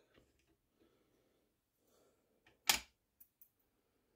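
Quiet room tone broken by one sharp click about two and a half seconds in, with a fainter tick just before it and a few light ticks after: small metal parts of the rifle's rear sight being handled with a hand tool.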